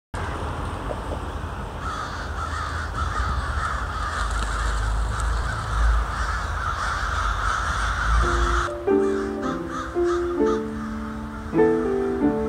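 A large flock of American crows cawing all at once in a dense, continuous chorus over a low rumble. About eight and a half seconds in it cuts to music made of short, steady notes.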